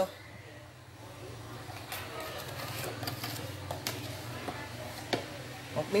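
Steady low hum of an electric glass-top cooker's cooling fan running under a boiling pot, with a few light clicks.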